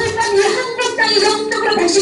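Speech only: a voice speaking through a microphone and PA system.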